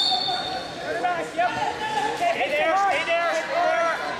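People shouting in a large hall, several rising and falling calls overlapping, with a brief high whistle blast right at the start.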